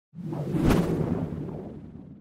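Logo-animation sound effect: a whoosh that lands on a sharp hit a little under a second in, followed by a low rumble that fades away.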